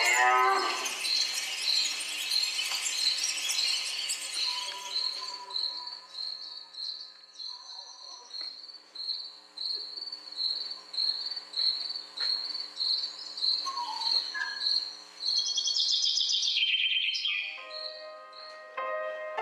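Insect chirping: a steady, even run of high-pitched chirps, about two and a half a second. Near the end a louder high warble rises over it, then piano music comes in.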